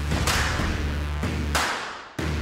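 Background music: a held deep bass note with two swishing sweeps over it, fading out near the end.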